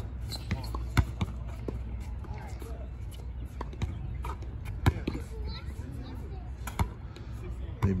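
Basketball bouncing during a pickup game: a few sharp bounces, the loudest about a second in, near five seconds and near seven seconds, over a low steady rumble and faint voices.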